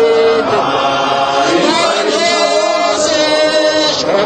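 Choir singing a gospel song about Jesus, several voices holding long notes together.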